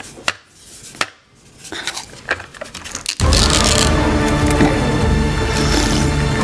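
A few sharp plastic taps and knocks as a plastic straw is jabbed at a bubble tea cup's sealed lid. About three seconds in, loud music starts and drowns it out.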